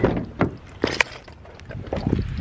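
Handling noise from a phone camera rubbing against a hoodie as it is moved, with a few sharp knocks and clicks in the first second, then softer fabric rustling.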